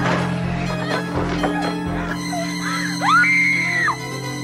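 Film soundtrack: steady low music with scattered cries, and a high scream that rises and is held for about a second near the end.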